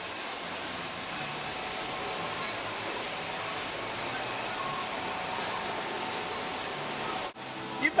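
Beer bottling line running 22-ounce bottles: a steady machine hiss with faint light clicking. It cuts off abruptly near the end.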